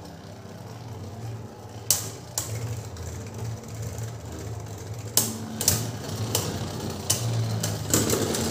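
Two Beyblade Burst spinning tops whirring in a plastic stadium, a steady low hum, with about half a dozen sharp clacks of impacts as they hit, coming more often in the second half.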